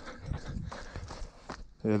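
Footsteps on a dirt bush trail littered with leaves, bark and twigs: a series of soft, uneven thuds and crunches from someone moving along the track.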